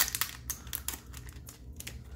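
Foil wrapper of a Japanese Pokémon GO booster pack crinkling and crackling as fingers handle and work at it, a run of short, sharp crackles that is busiest near the start.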